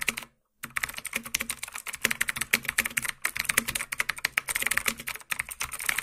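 Rapid computer keyboard typing, many keystrokes a second, with a brief pause just after the start.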